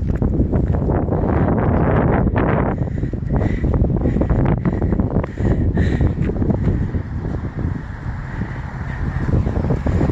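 Wind buffeting the phone's microphone in gusts, a loud, uneven rumble.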